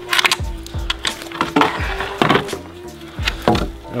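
Wooden formwork board being pulled off a concrete wall, its nails giving way from the concrete with a few sharp wooden cracks and knocks, over background music.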